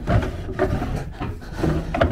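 A wooden drawer being pulled open, wood sliding and rubbing against wood.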